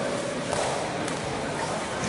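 Noisy hall background with muffled scuffling and a dull thud or two from two fighters grappling on a wrestling mat.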